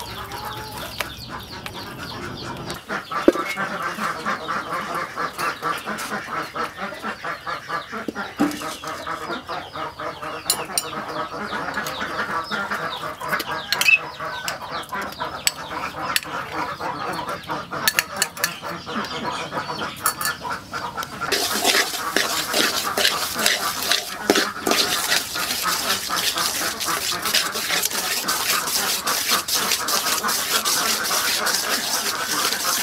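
Wet squelching and clicking of marinated pork pieces being kneaded by hand in a plastic bowl, with fowl-like clucking behind it. From about twenty seconds in, a steady sizzle as sugar melts in a hot metal wok and is stirred with a metal spoon.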